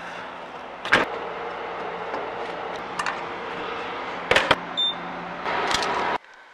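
Gas station fuel pump at the end of a fill-up: a steady mechanical hum with several sharp clicks and clunks of the nozzle and pump hardware, and a short high beep a little before the end.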